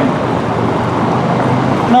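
Road traffic: cars driving past on the street, a steady rush of engine and tyre noise.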